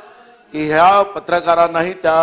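A man's voice speaking forcefully with long drawn-out vowels, starting after a half-second pause.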